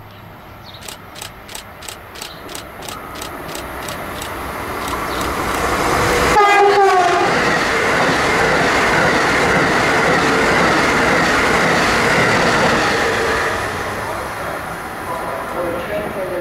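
Amtrak high-speed electric passenger train passing through a station at speed. Regular clicking about three times a second grows louder as it approaches, a short horn blast about six seconds in drops in pitch as it goes by, then a loud steady rush of wheels and air that fades near the end.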